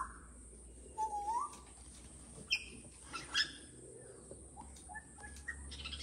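Faint bird calls: a few short whistled notes, one sliding down and one rising about a second in, then small chirps near the end, with a couple of soft clicks in between.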